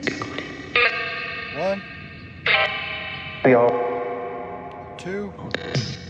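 Necrophonic spirit-box app playing through a smartphone speaker: echoing, effect-laden pitched fragments that start abruptly about four times and fade away, with short sliding pitch bits in between.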